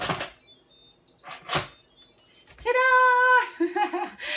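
Metal clatter and scrapes of an Instant Pot's stainless steel lid being set on and turned to lock, a few distinct knocks in the first two seconds. About three seconds in comes a loud held high note lasting under a second.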